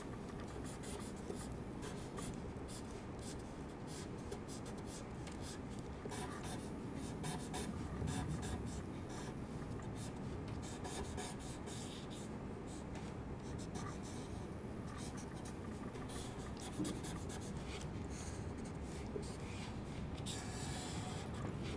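Copic E57 Light Walnut marker nib stroking back and forth on tracing paper in many short, scratchy strokes, filling in and blending the wood-floor colour.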